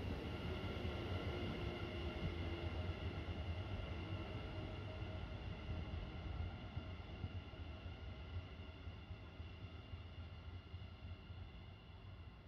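An NS Sprinter New Generation electric train moving slowly away along the platform, a low rumble with a steady electrical whine of several even tones that grows fainter as it recedes.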